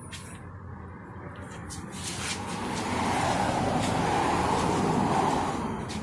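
An engine running with a steady low hum. It swells louder for a few seconds midway, then eases off.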